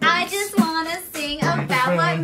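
A young woman singing into a studio microphone in a small foam-lined vocal booth, ending on a held low note.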